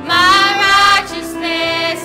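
A singing group of women and children singing together, the women's voices loudest: a loud held note through the first second, then a softer, lower held note.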